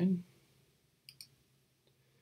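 A computer mouse button clicking: a quick press-and-release tick about a second in, selecting an edge in the CAD program.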